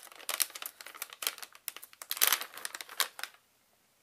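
Plastic treat pouch crinkling as it is handled and opened: a run of sharp crackles, loudest about two seconds in, stopping shortly before the end.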